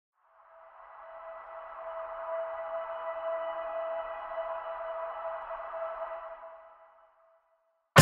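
A held electronic synth tone with higher tones ringing over it, swelling in over the first two seconds and fading away about seven seconds in: a logo intro sound effect.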